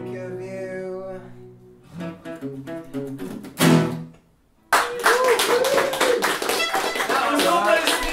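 Two acoustic guitars, a nylon-string classical and a steel-string, end a song: a chord rings, a few more strums, and a final loud strum dies away. After a short silence, clapping and voices from a small audience break out suddenly.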